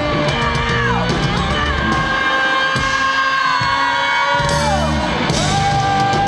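Live hard-rock band playing loud: a woman's belted singing and electric guitar over bass and drums. The drums and bass drop out for about two seconds in the middle under a long held note, which slides down near the end as the band comes back in.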